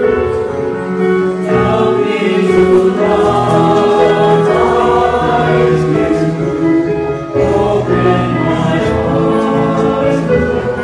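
A choir singing a hymn in sustained notes.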